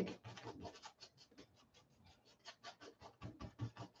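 Paintbrush scrubbing acrylic paint onto a stretched canvas: faint, quick scratchy strokes, several a second, with a short pause in the middle.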